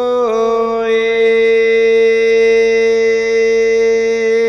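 Devotional chant: a single voice holds one long, steady note after a brief dip in pitch near the start.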